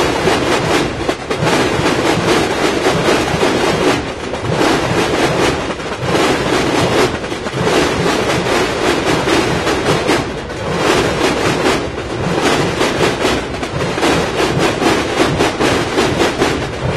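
Massed drumming by a large crowd of snare drums (tambores) and bass drums (bombos) played together, a dense, continuous roll of strikes that swells and dips slightly every few seconds.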